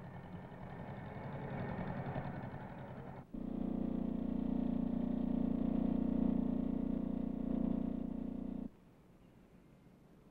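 A farm tractor's engine running, then, after a sudden cut about three seconds in, the louder, steady running of a small step-through motorcycle's engine. It cuts off sharply near the end, leaving only faint film hiss.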